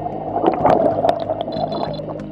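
Underwater bubbles rushing and gurgling, a dense hiss scattered with small clicks, over steady background music.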